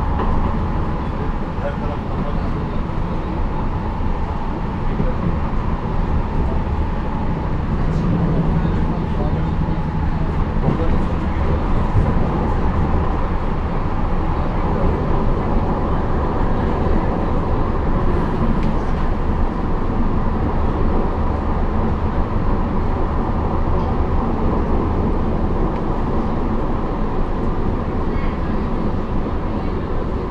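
Steady running noise inside a Badner Bahn (Wiener Lokalbahnen) light-rail car moving along the line: wheels rolling on the rails with a constant rumble and a faint steady hum.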